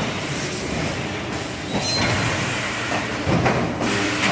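EPS 3D wire-mesh panel production machine running: a steady mechanical clatter with a couple of sharper knocks partway through.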